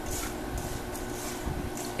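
Hands tossing diced cucumber, pepper, celery and onion with coarse salt in a stainless steel bowl: a soft, moist rustling of vegetable pieces with light knocks against the bowl, over a faint steady hum.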